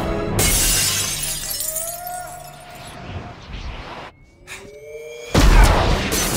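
A large glass window shattering about half a second in, with a spray of breaking glass that fades over the next second, under orchestral film score. Near the end comes a sudden deep boom.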